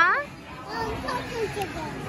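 Children's voices: a child's high-pitched call trailing off at the start, then quieter speech and chatter of children in the background.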